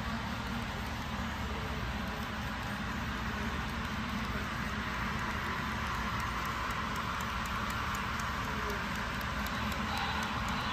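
HO scale model freight train rolling along the track, a steady rumble of its tank cars' wheels on the rails, with faint quick clicks in the second half.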